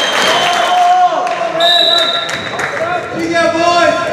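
Shouting voices of players and spectators echoing in a school gymnasium during a volleyball rally, with short sharp knocks from the ball and shoes on the hardwood court. A brief high steady tone sounds about one and a half seconds in.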